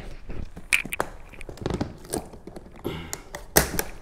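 A hard-shell guitar case being handled and laid down on a wooden floor: a series of knocks and clicks with rubbing between them, the sharpest click near the end.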